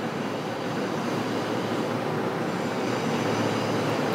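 A steady mechanical rushing noise, growing slightly louder.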